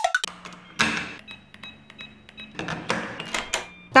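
Sound effect of a front door being unlocked and opened: a run of sharp clicks and two brief rattling bursts, about a second in and near the end, over a faint steady hum.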